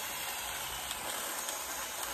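Steady rain falling on willow leaves and undergrowth, an even hiss.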